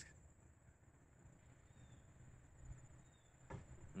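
Near silence: faint outdoor room tone with a faint steady high hiss.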